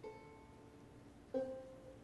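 Two soft plucked banjo notes in a pause of the song, one at the start and another just over a second in, each ringing briefly before fading.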